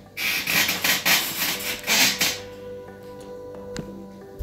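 Loud, repeated rubbing and scraping noises for about two and a half seconds, then quieter background music with steady held notes and a single sharp click near the end.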